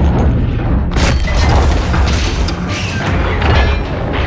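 Film sound design for an underwater shark attack: a constant deep booming rumble with several surging swells of churning noise, mixed over dramatic score music.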